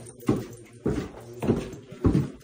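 Footsteps going down a flight of stairs: four heavy treads, a little over half a second apart.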